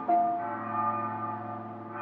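A bell struck once just after the start, its tone ringing on and slowly fading, over a faint low hum.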